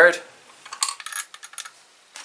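Light metallic clicks and taps of small assembly bolts and rifle parts being handled, a quick cluster of them about a second in.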